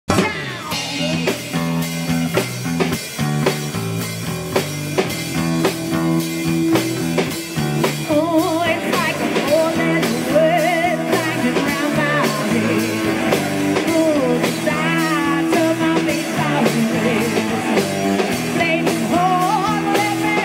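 Live rock band playing: electric guitars, bass and a drum kit keeping a steady beat. A wavering melody line joins about eight seconds in.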